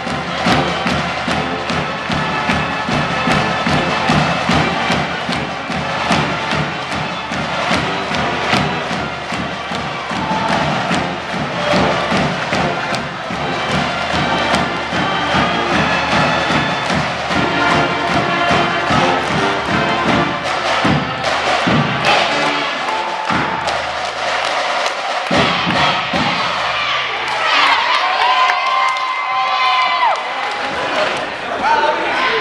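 School pep band playing, brass with sousaphones over a steady drum beat, while the crowd cheers.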